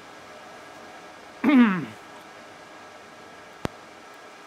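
Steady hiss of an industrial rack-mount computer's cooling fans running, with a man clearing his throat about one and a half seconds in and a single sharp click near the end.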